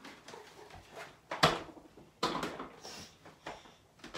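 Handling noise: a few knocks and scuffs as a plastic upright vacuum is put down, the sharpest knock about a second and a half in, followed by footsteps on a wooden floor.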